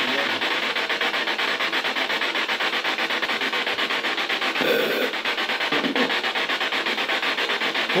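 A continuous rasping, scraping noise with a rapid pulse, from a source that nobody present can name and that draws the reaction "who is making that kind of noise?"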